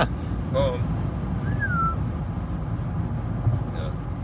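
Inside the cabin of a Mercedes S55 AMG at Autobahn speed: a steady low rumble of engine, tyres and wind. A short, faint falling whistle-like tone comes about a second and a half in.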